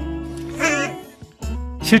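WALL-E's synthesized robot voice giving a short warbling, meow-like chirp over soft background music, about half a second in. The music drops away briefly, and narration begins at the very end.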